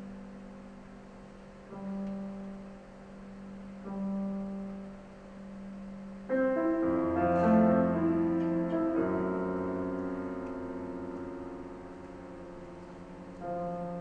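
Grand piano: soft low chords sound about every two seconds. About six seconds in comes a sudden loud, dense chord of many notes, which rings on with more notes layered over it and slowly dies away. New chords enter near the end.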